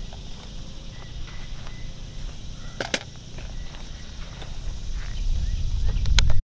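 Outdoor wind rumbling on the microphone, growing stronger toward the end, with a sharp double click about three seconds in.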